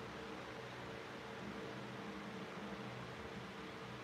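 Quiet room tone: a steady, even hiss with a faint low hum underneath.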